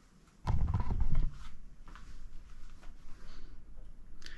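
Camera being picked up and carried: a loud rumbling bump of handling noise on the microphone about half a second in, then lighter rustles and small knocks as it is moved.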